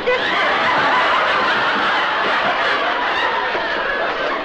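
Sitcom studio audience laughing in one long, steady wave of many voices.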